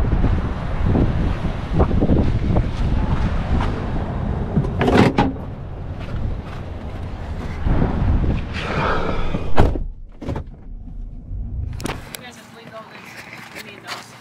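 Low rumbling noise on the microphone while a corrugated plastic yard sign is carried across a parking lot, broken by several sharp knocks and clatters of the sign being handled, the loudest about ten seconds in. The rumble drops away about twelve seconds in.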